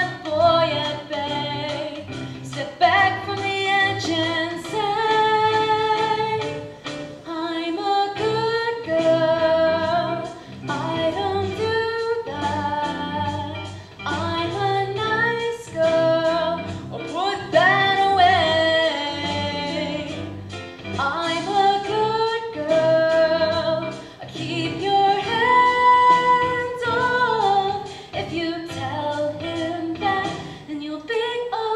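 Young voices singing a musical-theatre song over an instrumental accompaniment, with long held and sliding notes.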